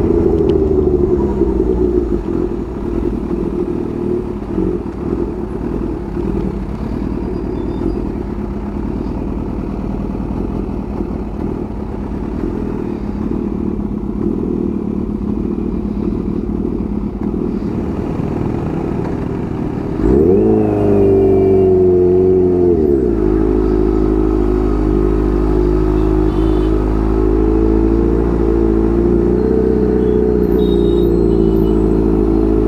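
Kawasaki Ninja H2's supercharged inline-four engine running under the rider at low speed in traffic. About twenty seconds in it is blipped: the pitch shoots up and falls back within a couple of seconds, then runs on steadily and a little louder.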